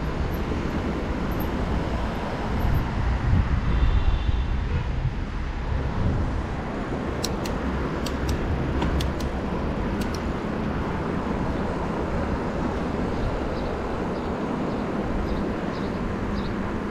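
Steady low rumble of a mountain bike rolling over stone paving, heard through the handlebar camera's microphone with wind noise, heaviest in the first few seconds. A few sharp ticks come about halfway through.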